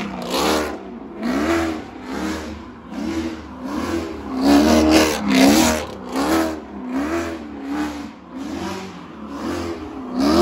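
A Chevrolet Camaro convertible doing donuts, its engine revved up and down over and over as the rear tires spin and screech.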